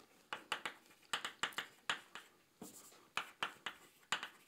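Chalk on a blackboard as words are written: a quick, irregular series of short taps and scratches.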